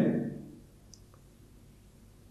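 A man's spoken word trailing off in the first half second, then a pause of near-silent room tone with a couple of faint clicks.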